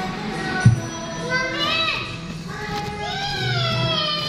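Young children's voices in an indoor play area, two long calls gliding up and down in pitch, with one sharp thump about a second in, over background music.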